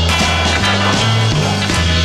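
Rock song soundtrack with a bass line and drums, no vocals in this stretch.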